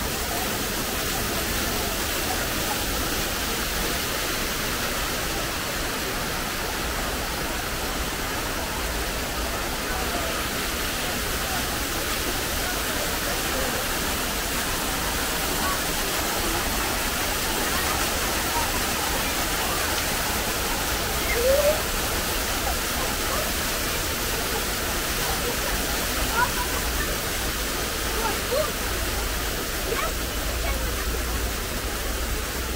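A cascade fountain's water pouring down a granite wall and splashing into the channel below: a steady, even rush of falling water.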